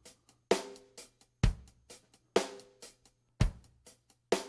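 Drum loop played back from a Roland SP-404 MK2 sampler pad: a break that was pitched up an octave, resampled, and played back down an octave at half speed. It is a sparse pattern, with a strong low hit about once a second and lighter hits between.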